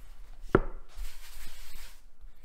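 A rolling pin knocks once against a floured wooden cutting board about half a second in, followed by a soft rubbing as it rolls over the pizza dough.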